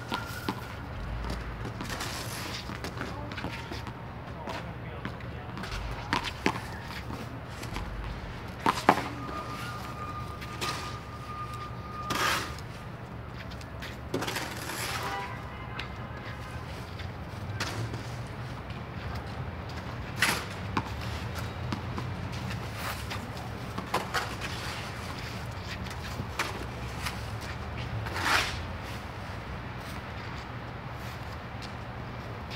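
Snow shovel scraping and knocking across a wet, slushy court surface in separate strokes every few seconds, over a steady background hum.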